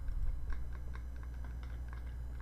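Computer keyboard typing: rapid, irregular light clicks, about six a second, over a steady low hum, with a soft low thump near the start.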